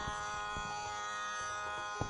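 A steady drone of several held pitches, the background drone for a Carnatic performance, sounding evenly without change.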